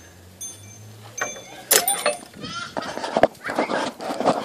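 Excited high-pitched voices and exclamations with no clear words, starting about halfway through, after two sharp knocks about a second in.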